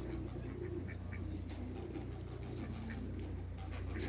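Pigeons cooing in low, wavering notes over a steady low hum.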